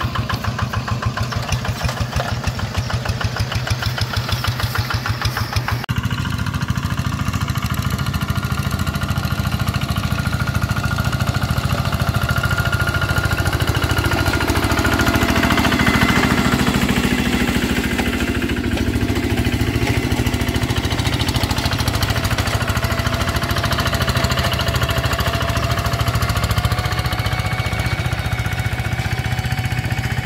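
Quick two-wheel hand tractor's single-cylinder diesel engine chugging steadily under load as it pulls a plough through a wet rice field. The sound shifts abruptly about six seconds in.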